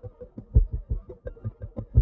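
Rhythmic guitar loop played back through a mix and fattened with overdrive and sub bass: short, bass-heavy pulses at about seven a second, with a stronger hit about every second and a half.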